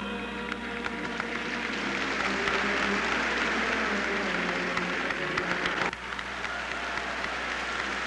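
Audience applauding, building up a couple of seconds in over the tail of fading music, with a brief dip near six seconds before the clapping carries on.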